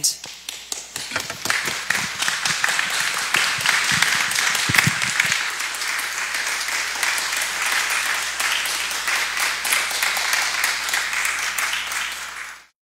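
Audience applauding: a few scattered claps that swell within about two seconds into steady applause.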